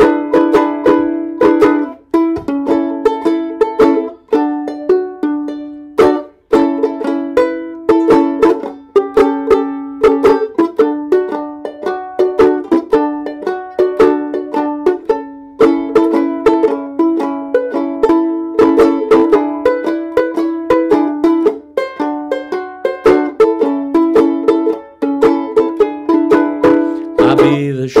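Banjo ukulele played alone in an instrumental break between sung verses: a steady run of quick, bright plucked and strummed notes, each dying away fast. Singing comes back in just before the end.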